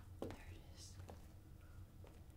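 Faint whispering over a low steady hum, with a single soft click about a quarter of a second in.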